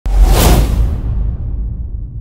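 Cinematic whoosh sound effect for a logo reveal: a sudden rushing swell that peaks about half a second in and fades by about a second, leaving a deep rumble underneath.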